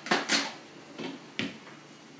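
A few sharp knocks and clatters of hard objects being handled. Two come close together just after the start, and two more follow around a second in.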